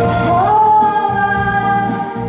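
A woman singing into a microphone, gliding up to one long held note about half a second in, over instrumental accompaniment.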